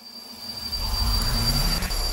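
Logo-animation sound effect: a low rumbling whoosh that swells up over the first second and then holds, with a thin steady high tone above it.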